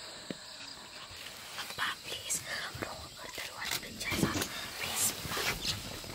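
Hushed human whispering in short breathy bursts, starting about a second and a half in and growing louder toward the end.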